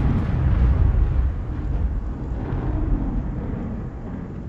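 A loud, deep rumbling roar like an explosion sound effect starts suddenly and holds, easing off slightly toward the end.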